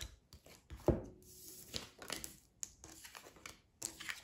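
Tarot cards being flipped face up and slid across a wooden tabletop: a series of soft card snaps and taps, the loudest about a second in.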